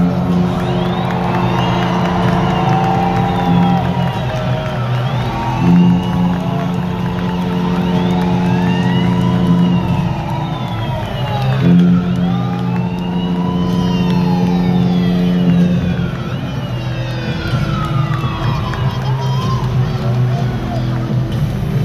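Arena sound system playing pre-game intro music: held synthesizer chords that change a few times, overlaid with siren-like sweeping tones that rise and fall again and again.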